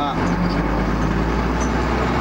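A minibus engine running under way, heard from inside the driver's cab: a steady low drone with road noise.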